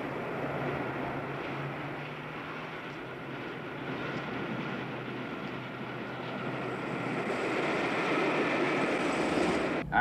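Street traffic noise, a steady rumble and hiss of motor vehicles, growing louder over the last few seconds as a car drives off, then cutting off abruptly.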